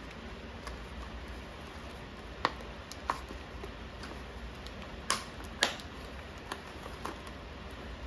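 Clear plastic moss pole being handled and clicked shut: scattered light plastic clicks, with four sharper ones in two pairs about two and a half and five seconds in.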